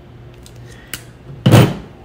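Hand crimping pliers closing on an insulated quick-disconnect terminal, with a small click just before one second in, followed by a loud, short thunk about a second and a half in.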